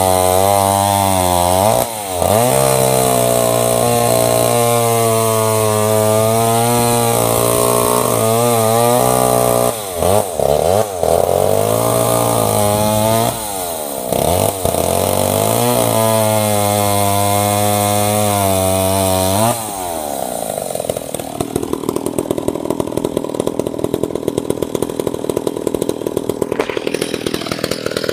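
McCulloch MAC 10-10 two-stroke chainsaw cutting through logs at high revs, its pitch sagging under load in each cut and rising again, with brief let-offs of the throttle about 2, 10 and 14 seconds in. About 20 seconds in it drops to a steady idle.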